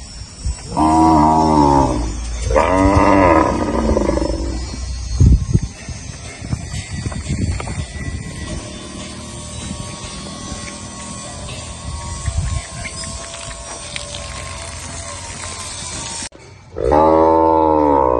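Gyr cattle bellowing: two long, low calls in the first few seconds and another near the end, with a single thump about five seconds in.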